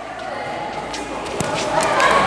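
Background chatter of children on the court, with a futsal ball struck once about a second and a half in.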